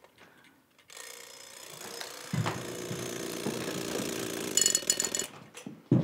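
Vintage wind-up mechanical alarm clock going off: its hammer rattles, then rings bright and loud on the bell before cutting off suddenly. A knock follows as a hand comes down on the clock to silence it.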